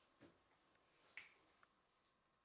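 Near silence in a quiet room, broken by a faint low thump, then one sharp click a little over a second in and a smaller tick just after.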